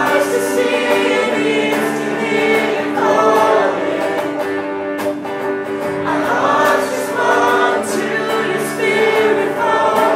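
A woman singing a slow, sustained melody into a microphone, accompanied by electric guitar.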